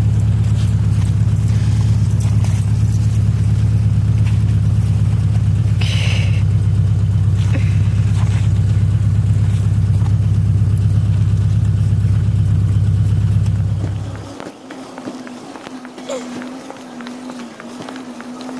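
A loud, steady low rumble that cuts off abruptly about fourteen seconds in, giving way to a quieter steady hum; a brief high squeak stands out about six seconds in.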